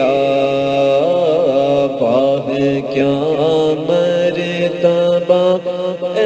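A solo voice singing long, wavering wordless notes of an Urdu devotional manqabat over a steady low drone.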